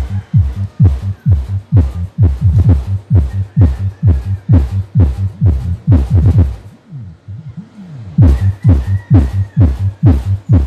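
Electronic dance music played loud through a pair of bass cabinets loaded with Live Pro 15 woofers, fed from the crossover's low output during a sound-system test. Deep kick thumps that drop in pitch come about three a second, break off about seven seconds in, and return a second later.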